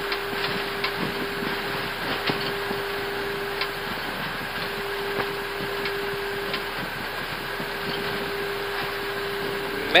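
Airbus A320 flight-deck noise during the landing rollout: a steady rush of noise with a constant hum and a few faint ticks as the airliner decelerates on the runway.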